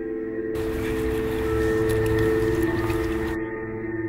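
Background score: a sustained drone of several held low tones, with a swell of hiss that rises about half a second in and fades out near the end.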